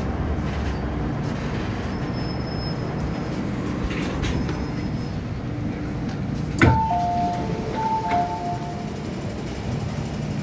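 Underground metro platform ambience with a steady low rumble. About two-thirds of the way through, a sharp knock is followed by a two-note electronic chime that sounds twice.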